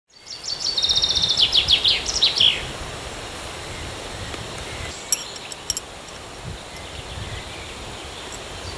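A songbird sings one phrase of rapid high notes that fall in pitch, over a steady outdoor woodland background. A few short clicks come about five seconds in.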